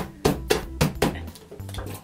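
A child's hand patting a glued paper template down onto card on a tabletop: about five quick taps in the first second. Background music with a low bass line plays under it.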